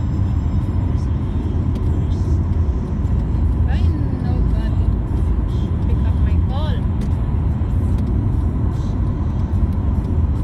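Steady low rumble of a car's engine and tyres, heard from inside the cabin while driving at highway speed. A voice comes in briefly about four seconds in and again a couple of seconds later.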